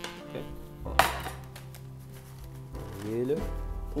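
A frying pan being tossed and knocked back down onto the glass hob, with one sharp clank about a second in, over steady background music.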